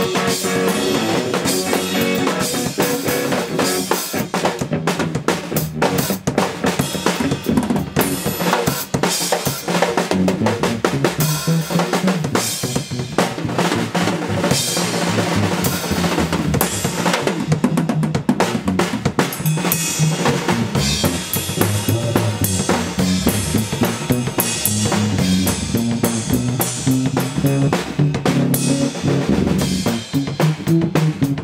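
Live instrumental passage for drum kit and electric guitar: the drums, with bass drum, snare and Paiste cymbals, are played busily and sit loudest, under a red Epiphone semi-hollow electric guitar.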